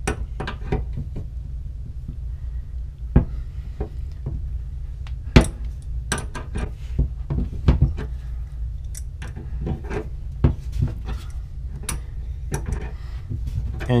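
Metal wrenches clicking and knocking against a gas pipe fitting as a threaded plug is worked loose, in irregular sharp clinks scattered throughout, over a low steady hum.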